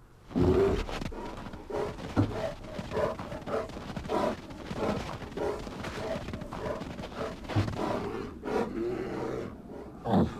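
Soundtrack of a classic Coca-Cola polar bear TV commercial playing back, carrying a run of short animal-like sounds about two a second.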